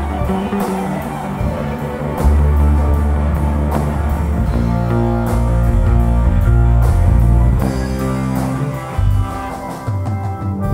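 Psychedelic rock band playing: electric guitar, bass guitar and drum kit, with deep sustained bass notes and regular cymbal hits.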